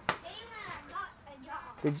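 Children's voices talking faintly in the background, with a sharp click right at the start and a man saying one word near the end.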